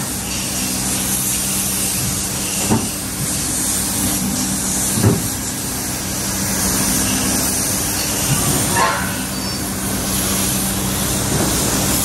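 Compressed-air paint spray gun hissing steadily while spraying paint, over a steady low hum, with a couple of brief knocks about three and five seconds in.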